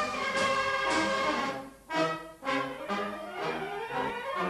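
Brass band music playing chords, with two brief breaks about halfway through before shorter notes follow.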